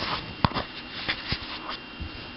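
Handling noise: rustling and a few light knocks, the sharpest about half a second in, as a mobile phone is moved and set down on a laptop. A faint steady high whine sits underneath.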